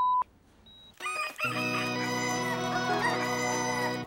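A censor bleep cuts off just after the start. About a second later a rooster crows, ending in one long held note, with a music sting under it as a scene-change cue.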